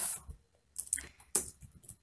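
Computer keyboard keystrokes: a handful of separate short clicks, starting about a second in.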